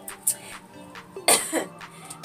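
A woman coughs once, a sharp burst about a second in, over soft background music.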